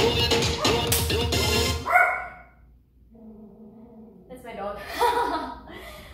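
Upbeat dance music cuts off about two seconds in; after a short lull, a dog barks a few times.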